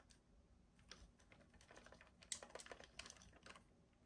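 Faint, scattered clicks and taps of fingers and nails on a hard plastic Bluey figure toy as it is handled and turned over, clustering between about two and three and a half seconds in.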